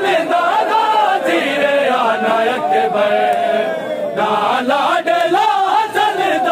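A group of men chanting a mournful Urdu noha in unison behind a lead voice, the line drawn out into one long held note that slides slowly down in the middle.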